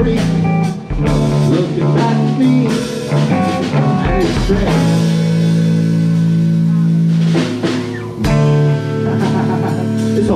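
Live rock band playing an instrumental passage: electric guitars over a Gretsch drum kit, with long held low notes.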